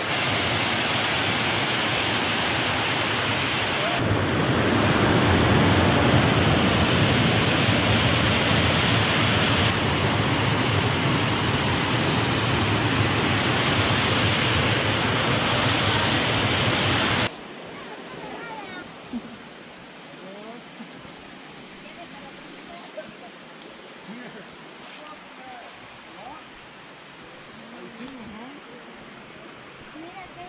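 Water pouring over a small weir cascade: a loud, steady rush whose tone changes abruptly twice. About seventeen seconds in it cuts suddenly to a much quieter backdrop of softer flowing water with faint, scattered short calls.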